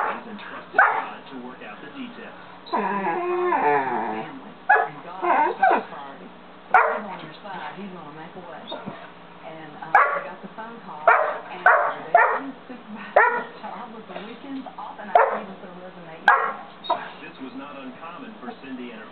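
Young St. Bernard barking loudly and repeatedly in short single barks and quick runs of two or three, play-barking to get a cat to play. About three seconds in, one long, wavering, drawn-out whining call.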